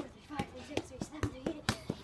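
A football being kept up with school shoes: a short thud at each kick, about two to three a second, in a steady rhythm.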